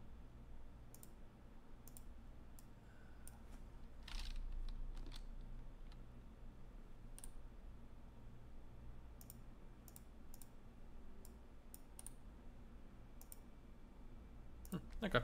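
Faint computer mouse clicks, a dozen or so at uneven intervals, with one louder brief noise about four seconds in.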